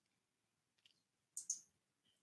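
Near silence with a few faint, sharp clicks, the loudest two in quick succession about one and a half seconds in.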